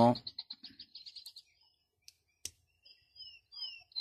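Multitool file blade being pulled open, with one sharp click about two and a half seconds in as it snaps out. A bird trills rapidly early on and gives short falling chirps near the end.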